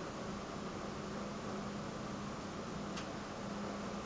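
Quiet room tone: a steady hiss with a faint low hum, and one faint click about three seconds in.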